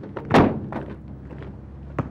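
A pickup truck door slams shut once, a sharp thunk about a third of a second in, with a low steady hum underneath.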